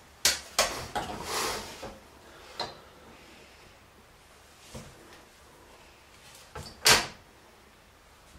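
A metal T-square being handled on a plywood board: a few knocks and a short scrape in the first two seconds, scattered light taps, then one sharp knock about seven seconds in.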